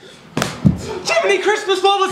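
A sharp slap about half a second in, then a man's wordless vocal sounds, pitched and bending, with no words.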